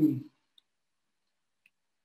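A man's word trails off, then near silence broken by two faint, short clicks about a second apart: a stylus tapping on a tablet screen while handwriting.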